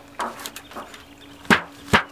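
A telescoping hive lid set down onto a wooden swarm trap box: a soft rustle, then two sharp wooden knocks about a second and a half and two seconds in as the lid lands and settles.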